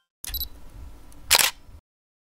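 Edited intro sound effect: a short bright click, then about a second later a louder noisy burst, over a low rumble that cuts off suddenly.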